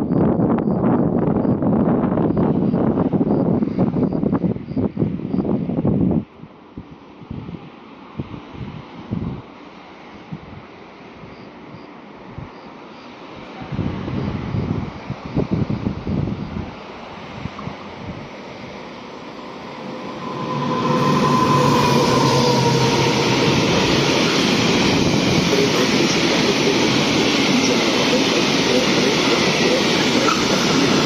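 Wind buffeting the microphone for the first few seconds, then quieter; about two-thirds of the way in, a freight train of hopper wagons hauled by an E652 electric locomotive arrives and runs through the station, its wheels and wagons rolling past loudly and steadily.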